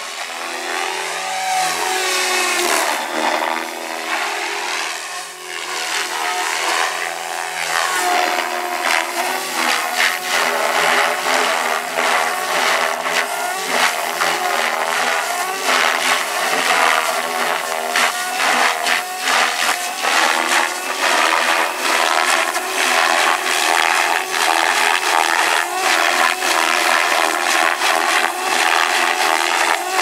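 Goblin 570 electric RC helicopter flying aerobatics: its motor and rotor whine rises and falls in pitch as it manoeuvres and passes. From about eight seconds in, the sound turns into a rapid chopping pulse.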